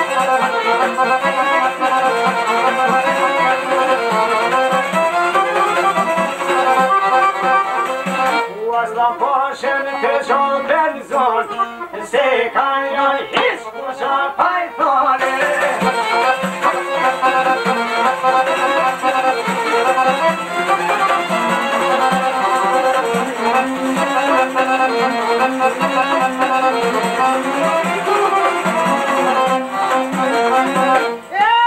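Albanian folk instrumental played on a long-necked sharki lute with a fiddle-like melody line, without singing. About a third of the way through, the melody moves into a passage of sliding notes before the full playing returns.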